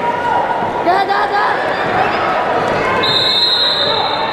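Indoor sports-hall ambience during a women's freestyle wrestling bout: voices and chatter echo around the hall, and the wrestlers' shoes squeak and thud on the mat. About three seconds in, a high steady tone starts.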